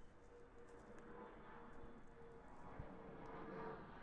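Faint footsteps on trackside gravel while walking, over a faint steady hum.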